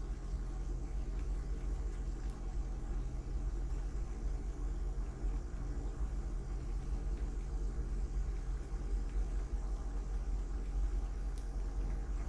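Car driving along a paved road: a steady low rumble of engine and tyres.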